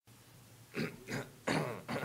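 A young man coughing three times into his fist, the third cough a little longer.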